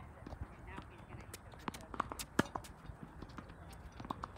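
Tennis balls being struck by rackets and bouncing on a hard court during a short-range rally: a string of sharp pops and knocks at uneven intervals, the loudest a little under two and a half seconds in.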